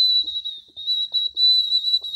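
A high-pitched whistle held on one steady note, wavering slightly, with a couple of brief dips.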